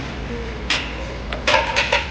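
Ceramic cactus salt and pepper shakers clinking and knocking as one is set down beside the other on a metal wire shelf: a single knock, then a quick cluster of clinks near the end.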